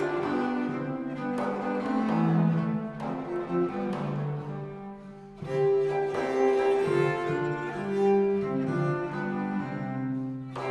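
A consort of viols (violas da gamba) plays slow Renaissance polyphony in several sustained, overlapping lines. It thins to a brief pause at a cadence about halfway through, then resumes.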